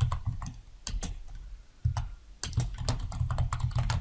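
Typing on a computer keyboard: an uneven run of quick key clicks, with a short pause about halfway through.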